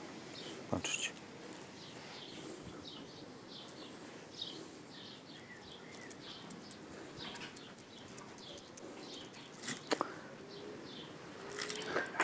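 A small bird chirping over and over in short falling notes, with a few sharp clicks about a second in and again near ten seconds.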